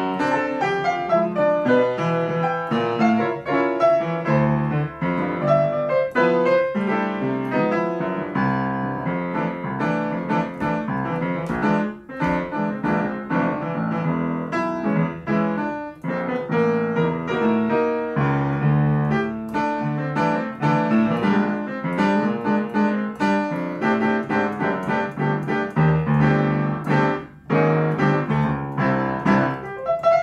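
Solo upright piano playing a samba-style jazz piece: busy two-handed chords and melody with dense, quick notes and a few brief breaths in the playing.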